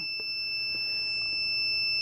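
A steady high-pitched electronic whine, one even tone with a faint low hum beneath it.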